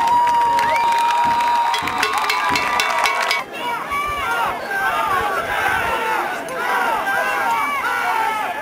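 Football crowd and sideline voices cheering and shouting, with a long steady tone held and a rattle of claps in the first three seconds. About three and a half seconds in, the sound cuts to a new stretch of many overlapping shouting voices.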